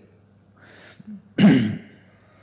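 A person breathes in and then clears their throat once, a short rough rasp about halfway through.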